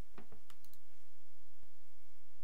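A few quick clicks of a computer mouse button over a low steady hum.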